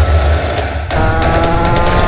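Background music with a low beat. From about a second in, a high-revving two-stroke engine (a 50cc bike bored to 80cc with an Airsal kit) comes in, its pitch climbing slowly as it accelerates.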